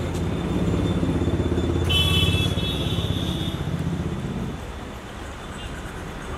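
A car's engine running close by, a low steady hum that fades out about four and a half seconds in. A brief high-pitched tone sounds about two seconds in.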